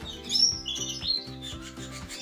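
Canaries chirping and twittering, a run of high calls in the first second, over background music of steady low notes.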